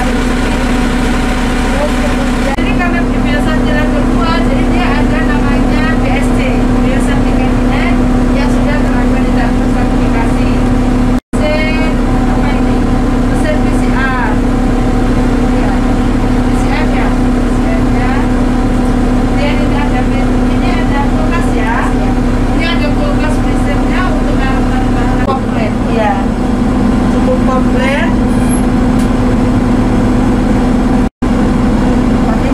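Steady machine hum with a constant low drone, from equipment and power running in a mobile laboratory truck, with faint voices underneath. The sound drops out for an instant about eleven seconds in.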